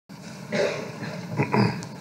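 A man's low, indistinct voice, rising twice in loudness, without clear words.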